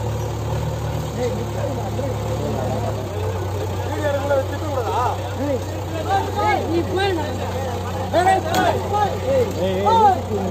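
Diesel engines of a JCB 3DX backhoe loader and an HMT 5911 tractor running at idle: a steady low drone, a little heavier for the first three seconds, with men talking over it.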